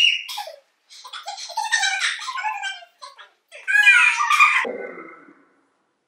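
Young women laughing and shrieking in excited bursts, opening with a sharp high-pitched squeal and dying away shortly before the end.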